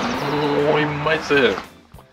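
A person's drawn-out vocal call lasting about a second and a half, with background music under it.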